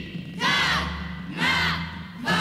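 A group of voices shouting in unison in a break in the music: two short shouts about a second apart, like a military battle cry.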